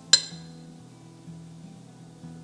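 A single sharp clink of a metal serving spoon against a ceramic dish, ringing briefly, just after the start, over quiet background music.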